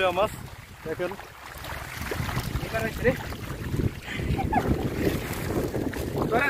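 Shallow water sloshing and splashing as a fine-mesh seine net is dragged through it by wading men, with wind buffeting the microphone and faint voices.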